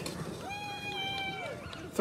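Alaskan husky sled dog giving a high whine, one held note of about a second that drops off at the end. It is the sound of an excited team waiting at the start line.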